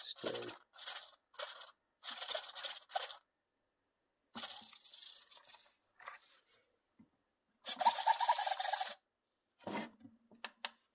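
Micro servos in a 1/24-scale RC crawler whirring as the steering is turned back and forth, the steering servo and a second servo that turns the driver figure's head moving together. The whirs come in a string of short goes with gaps, the last and longest near the end.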